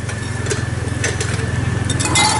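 A steady, low mechanical drone like an idling motor, with a few light clinks of a metal ladle against the broth pot and a ceramic bowl as hot broth is ladled out.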